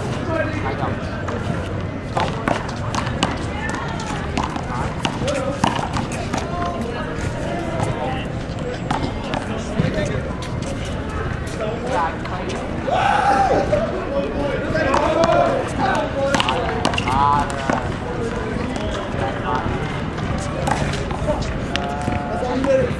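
Men's voices talking across an outdoor concrete handball court, with scattered sharp knocks of a small rubber handball striking the wall and the concrete, over a steady low city hum.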